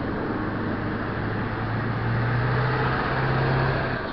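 A motor vehicle's engine running close by, a steady low hum that steps up a little in pitch and grows louder about halfway in, over a haze of street noise.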